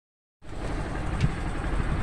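Low rumbling road noise and wind rush from a moving vehicle. It starts abruptly about half a second in and holds steady.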